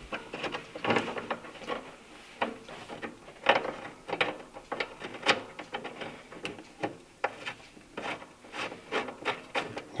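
Scattered small clicks, scrapes and knocks of metal parts being handled as a bolt is lined up and started into a Volvo 240's bonnet hinge.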